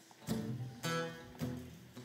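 Acoustic guitar strumming the opening chords of a song, about four strums roughly half a second apart.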